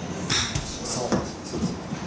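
A golf club strikes a ball off a hitting mat with one sharp smack about a third of a second in, followed by brief voices.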